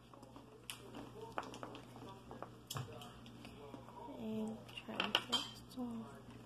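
Small plastic spoon scraping and tapping against an ice cream tub and a little bowl while scooping, a run of light, irregular clicks.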